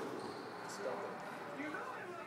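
Squash ball struck and rebounding in a rally: a sharp knock right at the start, then quieter court sounds with faint voices.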